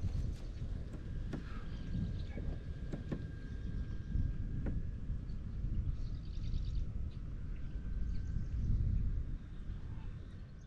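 Wind noise on the microphone, a steady low rumble, with faint bird chirps about six to seven seconds in and a few light clicks.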